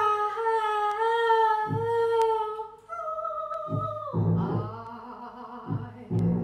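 A woman's voice singing long held wordless notes: one wavering tone for about three seconds, then a higher one, turning rougher and less clear about four seconds in. Low notes sound underneath about every two seconds.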